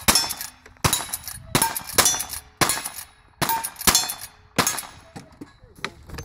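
Lever-action rifle firing rapid shots in cowboy action shooting, roughly one every two-thirds of a second, with steel targets ringing after the hits.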